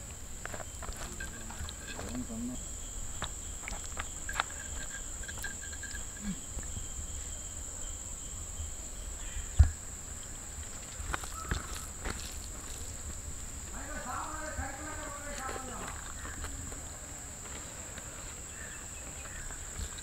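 Rural outdoor ambience with a steady high-pitched insect drone, faint scattered clicks, a single short thump about ten seconds in, and a faint voice a few seconds later.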